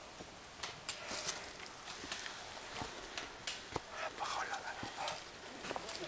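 Footsteps on a trail covered in dry fallen leaves and dwarf bamboo, the leaves crackling irregularly underfoot.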